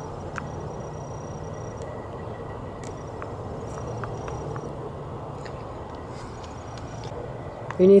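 Steady low background noise with a faint hum, broken by a few small faint clicks.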